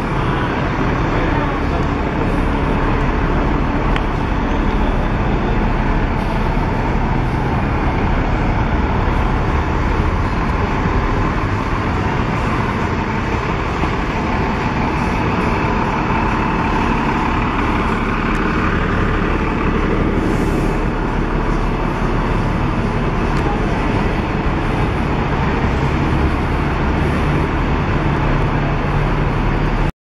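Busy city street traffic, with double-decker buses running and pulling past close by: a steady engine rumble over road noise.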